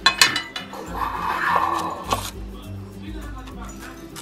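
The metal lid of a biscuit tin clinks as it comes off at the start, followed by a papery rustle about a second in and a click just after two seconds, with background music under it all.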